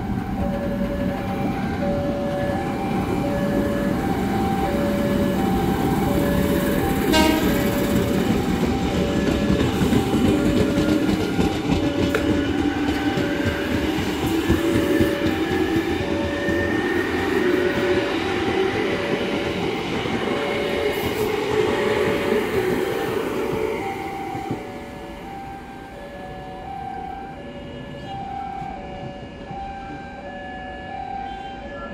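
KRL Commuterline electric train pulling out of the platform, its motors whining up in pitch as it gathers speed, then fading after about twenty-four seconds. A short horn blast sounds about seven seconds in, and a two-note tone repeats about once a second throughout.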